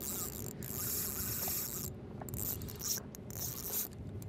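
Spinning reel being cranked to bring in a hooked fish, a rasping whir of gears and line in two long spells with a brief pause about two seconds in.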